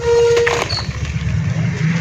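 Wet red dirt squeezed and crumbled by hand in a bowl of muddy water. A low steady rumble runs underneath, and a brief steady tone sounds near the start.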